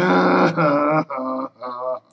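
A man's voice making wordless, drawn-out sounds: a long 'uhh' of about a second, then two shorter hummed sounds.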